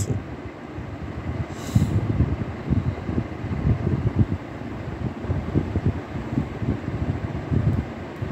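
City street background noise: a low, uneven rumble, with a short hiss about two seconds in.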